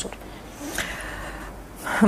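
A person's audible intake of breath, a noisy breath lasting under a second, between spoken phrases.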